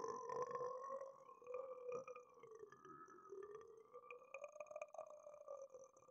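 Faint handling noise of a camera being gripped by hand: small clicks and rubs over a faint steady whine that wavers slightly in pitch.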